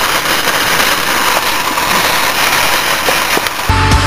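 Loud, steady crackling rattle of a wire shopping cart rolling fast over parking-lot asphalt. Near the end it cuts off and loud heavy rock music with a pounding beat starts.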